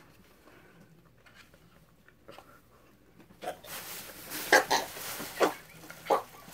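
Near quiet for about three seconds, then several short, strained vocal sounds of disgust in a row from people reacting to a foul-tasting jelly bean.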